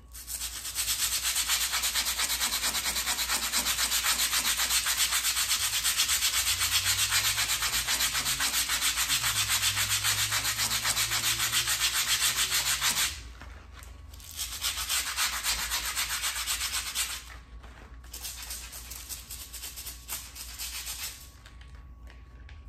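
Small stiff-bristled hand brush scrubbing a painted baseboard rapidly back and forth: a dense, steady scratching for about thirteen seconds, then after a short pause two shorter bouts of scrubbing, the second quieter.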